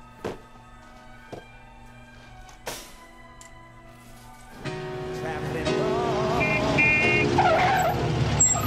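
Soft, sustained background music with a few faint clicks. About halfway through, louder music starts along with a car engine and squealing tyres as a small car darts into a parking space.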